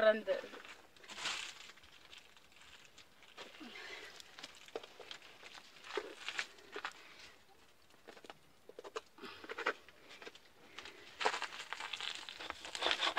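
Low, fairly quiet sound with scattered soft clicks and short, faint snatches of voices; a voice starts speaking clearly about a second before the end.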